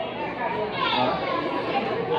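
Speech: several voices talking over one another, with no single clear speaker.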